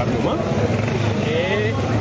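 A motor vehicle engine running, a steady low rumble, with voices over it.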